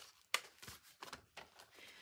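Folded paper signatures being handled and leafed through: a few faint rustles and light taps of paper, the sharpest about a third of a second in.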